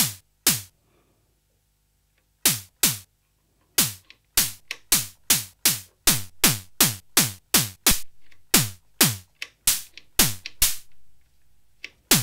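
Behringer Pro-1 analog synthesizer playing a snare-drum patch: short hits of noise mixed with a pulse-wave tone that sweeps quickly down in pitch. The hits come again and again at an uneven pace after a short pause near the start, and the tone shifts from hit to hit as the patch is tweaked.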